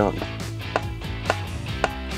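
PULSAtron Series MP solenoid-driven metering pump running its calibration draw: one sharp click per stroke, about two a second, evenly spaced.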